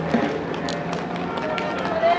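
Several sprinters running hard on a synthetic track, a quick scatter of footfalls, with voices calling out in the background.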